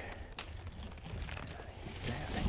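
Faint rustling and crunching in dry leaf litter with low handling rumble on the microphone, and one sharp click about half a second in.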